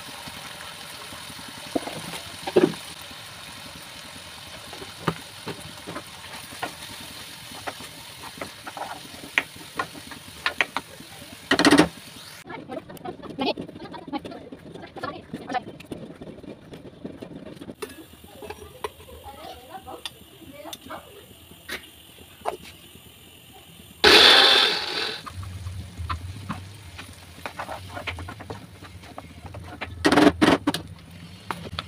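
Oil sizzling as onion masala fries in a non-stick kadhai, with a spatula scraping and tapping the pan. Two loud clatters come about 12 and 24 seconds in, and a low hum runs through the last few seconds.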